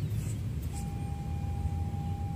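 A metal detector's audio tone: one steady, even-pitched note starting just under a second in and holding, over a constant low rumble.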